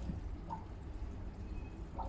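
Aquarium pump running with a steady low hum.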